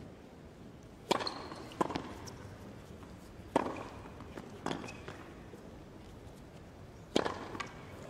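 A tennis ball being hit back and forth in a rally on a hard court: about six crisp, sharp pops of racket on ball, a second or two apart, with the last two close together near the end, over a quiet, hushed arena.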